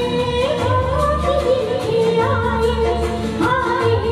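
A woman's voice singing a Hindi film duet into a microphone, with long held, gliding notes, over backing music with a steady beat.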